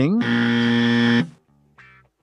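Buzzer-like sound effect: a loud, steady, distorted pitched tone held for about a second and cut off abruptly, followed near the end by a brief faint tone.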